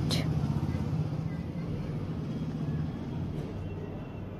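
A steady low background hum and rumble that slowly fades, with a brief breathy hiss right at the start.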